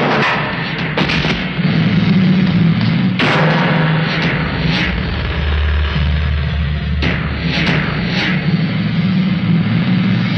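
Film fight-scene soundtrack: a loud background score over a sustained low drone, punctuated by a series of sharp hits.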